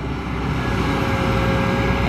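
Kobelco SK200 hydraulic excavator working, its diesel engine running steadily with a low rumble and a steady whine.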